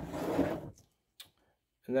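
Rubber putter grip filled with grip solvent being handled: a brief rubbing rustle lasting under a second, then a faint click.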